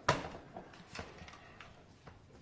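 Footsteps of hard-soled shoes on a polished stone corridor floor: a sharp step at the start, the loudest, then a few lighter steps about a second apart.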